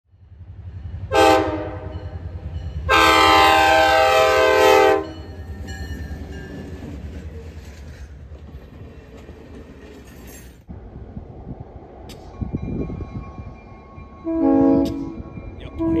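Diesel locomotive horn sounding a short blast, then a long one, over a steady low engine rumble. After a sudden cut about two-thirds of the way in, the horn sounds two more short blasts near the end.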